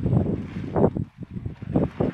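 Irregular low rumbling buffets on a handheld phone's microphone, with soft thumps scattered through it.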